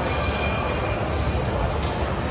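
Steady low roar of busy gym background noise, with no distinct clanks or voices standing out.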